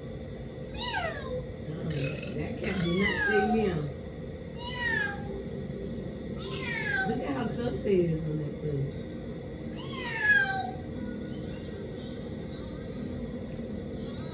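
A cat meowing repeatedly: about five calls that fall in pitch, a couple of seconds apart.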